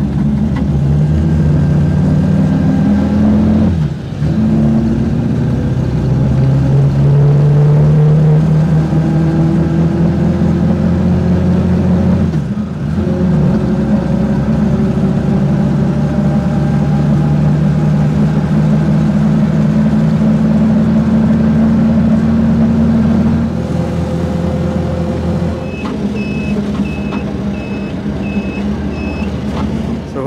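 Siwa four-stroke auto rickshaw engine heard from inside the passenger compartment while riding. The engine note rises as it pulls, drops briefly about four and twelve seconds in, runs steadily, then eases off. Near the end a short electronic beep repeats a little more than once a second.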